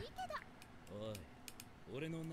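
Faint anime dialogue: a character's voice speaking quietly, under a few sharp, separate clicks like keyboard typing.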